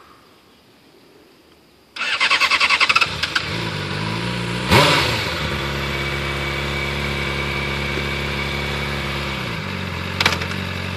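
Honda CBR600RR inline-four engine being started: about two seconds in the electric starter cranks it in a quick rapid pulse, the engine catches, is blipped once with a short rise in revs, then settles to a steady idle.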